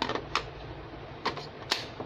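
Hard plastic clicks and knocks as a cordless drill's battery pack and its charger are handled and pressed together: four sharp clicks spread over two seconds, with a steady faint hiss underneath.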